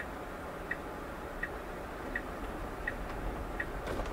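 Tesla turn-signal indicator ticking in the cabin, a light click about every three-quarters of a second, six in all, as the self-driving car signals a turn at the intersection. A low, steady cabin hum runs underneath.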